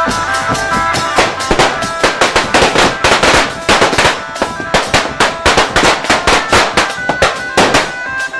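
Marching drum band's percussion section playing a loud, fast break of drums and crash cymbals. The melody instruments drop out about a second in, leaving only the rapid hits.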